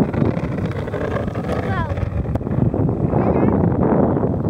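Wind buffeting the microphone, a steady low rumble, with faint distant voices over it.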